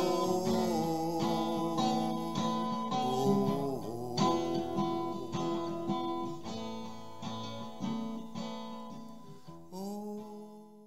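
Gibson acoustic guitar strumming chords in a steady rhythm as the song's instrumental ending, growing gradually quieter, with one last strummed chord just before the end.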